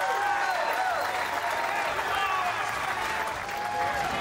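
Crowd cheering and applauding a strike, with scattered shouts and whoops over steady clapping.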